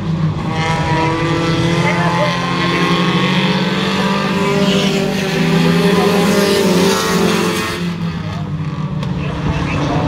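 Several Pure Stock race cars running in a close pack around a short oval, their engine notes overlapping and shifting in pitch as they pass, easing off a little about eight seconds in.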